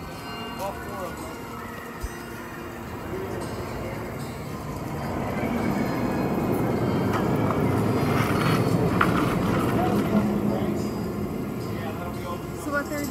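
Outdoor background noise with indistinct voices, swelling to a louder rumble in the middle and easing off near the end, with a few sharp clicks at its loudest part.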